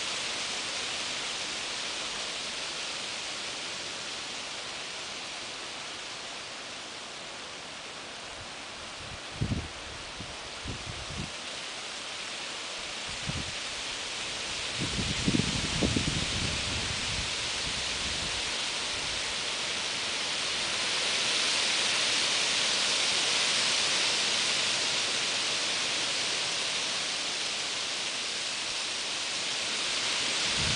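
Wind rustling through a tree's autumn leaves, a steady hiss that swells for a few seconds about two-thirds of the way through. A few brief low thumps come through near the middle.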